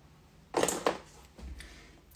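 Brief rustling and clatter of small makeup items being picked up and handled, loudest about half a second in, followed by a softer low knock near the middle.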